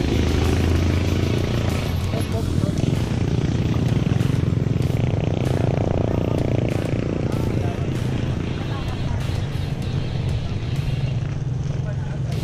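Wind rushing over the action-camera microphone and tyre noise from a bicycle rolling on a concrete road, with a motorcycle passing close by near the start and more traffic swelling about halfway through.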